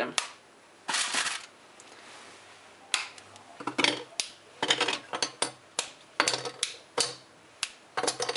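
Squares of a dark chocolate bar being snapped off and dropped into a bowl set over a pot: a short rustle about a second in, then a quick run of sharp snaps and clicks from about three seconds in.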